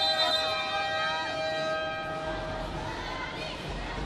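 Arena buzzer sounding one steady, flat horn-like tone for about two and a half seconds, marking the end of a timeout, over players' voices and crowd noise.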